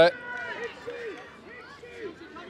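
Scattered shouts and calls from spectators and players around a football pitch, faint and distant, several short rising-and-falling calls.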